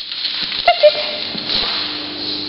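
Border collie playing with a ball on a hard floor: a few sharp knocks, and just under a second in a short, high yip.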